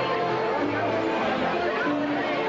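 A big dance band playing held chords at a steady level, with crowd chatter over the music.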